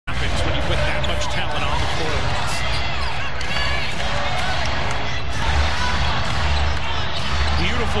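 A basketball dribbling on a hardwood court over the steady din of a packed arena crowd, with arena music carrying a heavy low bass underneath.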